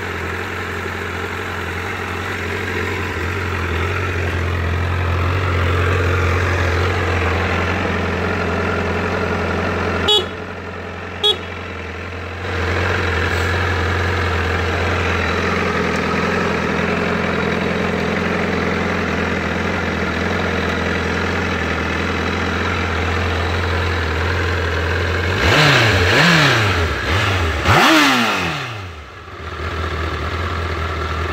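2010 Honda CBR1000RR's inline-four engine idling steadily. Two short sharp clicks come about a third of the way in. Near the end the throttle is blipped twice, the revs rising and falling each time, before the engine settles back to idle.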